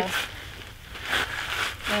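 Quiet outdoor background with a few faint rustles of clothing and handling as a shooter settles in behind the rifle; no shot is fired.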